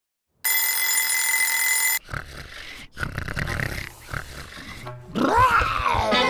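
A steady electronic tone for about a second and a half. Then a cartoon pig snoring in low grunts about once a second, ending in a whistle that rises and falls.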